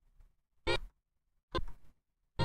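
Two brief pitched snippets of a music sample played back about a second apart, with near silence between them, as the sample is auditioned in short pieces.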